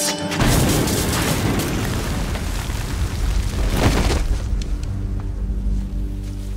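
A tripwire-set Claymore mine goes off about half a second in: a sudden boom, then a long low rumble that dies away over several seconds, with a second sharp crack near four seconds. Background music plays underneath.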